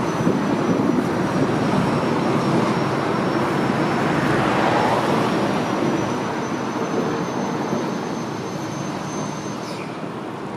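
Street traffic noise: a vehicle passing, its rumble growing louder toward the middle and fading away near the end.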